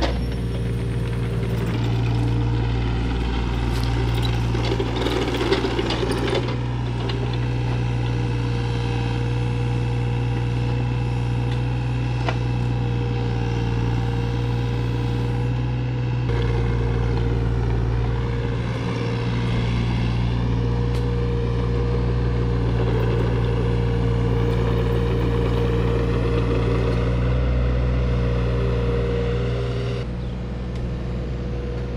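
An engine running steadily at an even speed, with a stretch of clattering a few seconds in.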